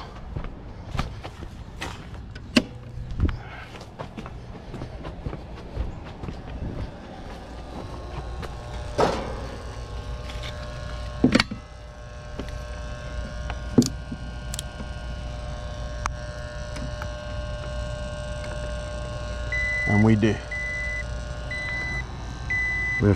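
Clicks and knocks of test leads and a clamp meter being handled at an outdoor electrical disconnect box, over a low steady hum, with steady tones joining about halfway through. Short high beeps repeat near the end.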